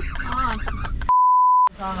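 A steady, single-pitched bleep tone at about 1 kHz lasting about half a second, dubbed in during editing with the rest of the sound muted: the kind of bleep used to censor a word.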